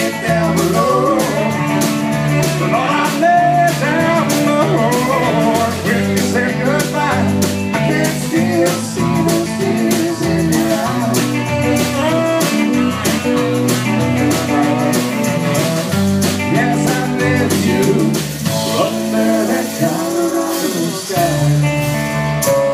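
Live southern/trop-rock band playing with electric bass, acoustic and electric guitars, drum kit and saxophone, over a steady drum beat.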